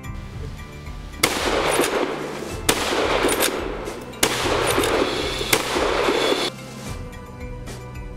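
Four shots from a scoped hunting rifle, fired in quick succession with fast reloads about a second and a half apart. Each is followed by a long rolling noise that runs on until the next shot, and it stops suddenly after the last. Soft background music plays underneath.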